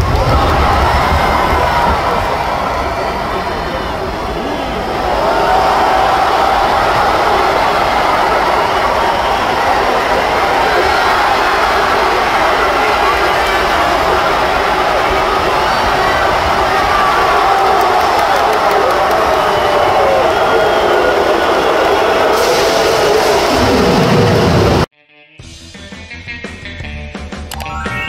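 Wrestling arena crowd shouting and cheering, with music mixed in. It cuts off suddenly about a second before the end as quieter outro music begins.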